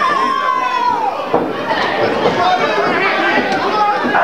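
Boxing-match spectators shouting and chattering over one another, with one long shout in the first second and a sharp knock a little over a second in.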